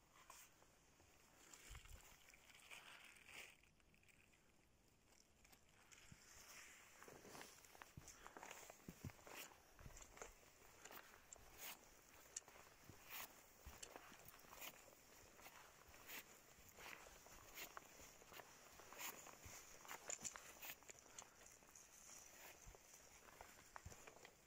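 Faint footsteps of someone walking over a dry forest floor, with quiet crackling of needles and twigs underfoot, irregular and several to the second from about six seconds in.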